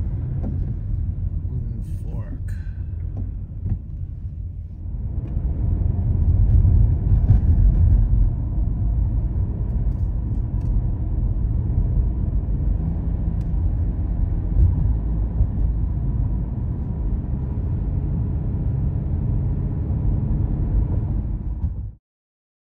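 Car driving at road speed, a steady low road-and-engine rumble heard from inside the cabin, growing louder about five seconds in.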